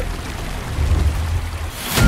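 Steady rushing, spraying water noise with a heavy low rumble, swelling into a rising whoosh near the end.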